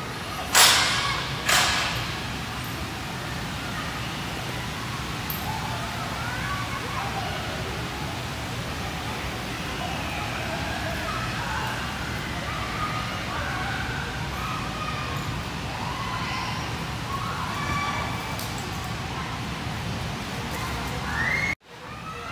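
Ambience of a large indoor play hall: scattered distant voices over a steady low hum, with two loud sharp bangs about half a second and a second and a half in.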